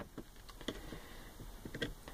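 A few faint, light clicks of a small screwdriver and fingers against the plastic flush pump of a Thetford cassette toilet, with a single click about a third of the way in and a quick cluster near the end.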